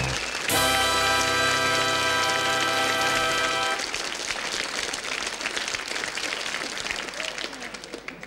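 The sitcom's closing theme music ends on a long held chord, with studio audience applause beneath it. The applause carries on alone after the chord stops and is fading out near the end.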